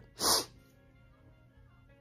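A quick, sharp exhale of breath, about a third of a second long, shortly after the start, over faint background music.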